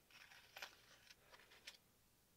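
Near silence with a few faint clicks and rustles as a metal eyelet setter and a plastic blister pack of eyelets are handled.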